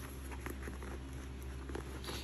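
Faint rustling and a few light clicks from hands handling a nylon handbag and its metal zipper pulls, over a low steady hum.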